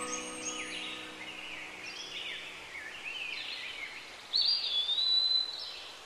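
Birds chirping in short rising and falling calls, with one longer whistled call about four and a half seconds in. The last held notes of soft background music fade out in the first second.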